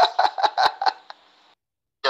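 A man's short, quick staccato laugh, about six pulses in a second and a half, recorded through a phone voice note; it cuts off abruptly into silence.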